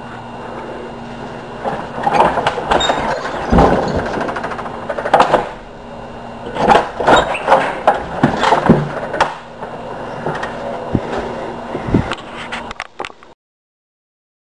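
Irregular knocks, clatters and scraping, with several sharp bangs. It all cuts off abruptly shortly before the end.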